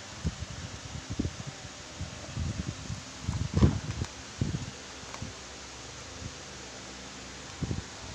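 Crinkling of a torn-open instant coffee sachet being handled and shaken over a mug, in irregular rustles that are loudest about three and a half seconds in.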